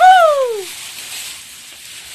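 A person's loud drawn-out call falling in pitch over about half a second, then quiet outdoor background.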